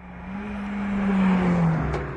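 A drag-racing car speeding past, its engine note swelling and then dropping in pitch as it goes by.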